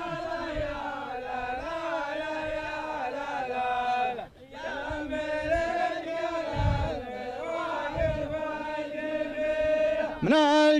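A group of men chanting a poem together in long, drawn-out sung lines, the call-and-response chant of a Saudi ardah sword dance. Two low thumps sound over the chant in the second half.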